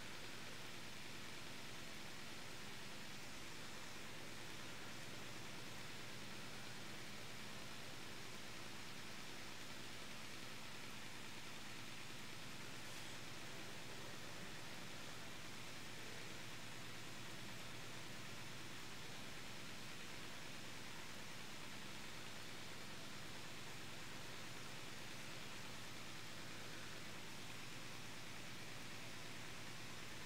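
Faint steady hiss with no distinct sounds in it.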